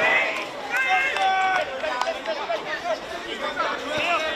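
Players and onlookers shouting and calling out during a football match, several voices overlapping, with one longer held shout about a second in.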